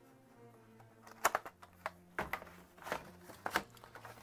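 Cardboard box and printed booklets being handled: a few short sharp clicks and rustles as the paper pieces are lifted out, the loudest about a second in and again near the end.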